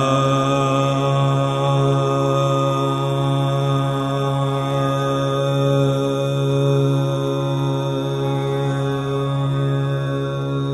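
Steady drone on one low note with many overtones, unchanging throughout: the tonic drone under a Hindustani classical vocal performance, here with the sung line paused.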